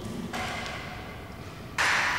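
Salt pouring from a plastic cup through a funnel into a plastic bottle: a soft, grainy hiss that fades over about a second and a half. Near the end a louder steady hiss cuts in suddenly.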